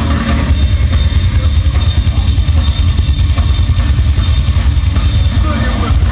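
Heavy metal band playing live and loud, an instrumental stretch with the drum kit to the fore: rapid bass drum strokes under cymbals, snare and distorted guitars.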